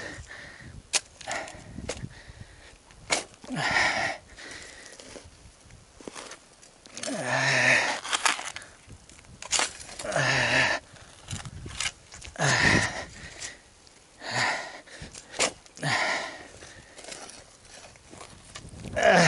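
A steel shovel digging into hard, stony soil: repeated sharp strikes and gritty scrapes as the blade is driven in and levered, one stroke every second or two.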